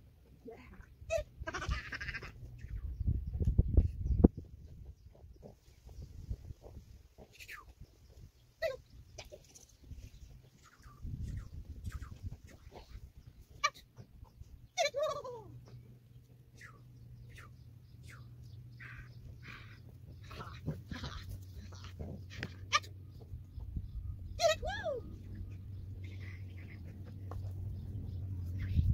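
Four short, wavering animal calls, several seconds apart, among brief high chirps and bursts of low rumbling noise.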